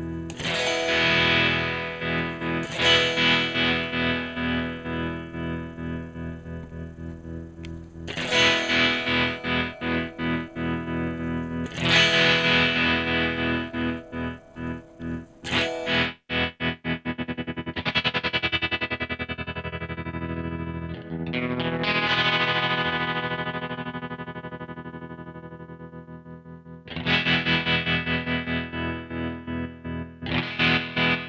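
Electric guitar chords played through a MadeByMike Saltshaker tremolo pedal, struck several times and left to ring while the volume pulses on and off. The tremolo speed changes as the fine and rate knobs are turned, going from slower swells to a fast, choppy stutter around the middle and back.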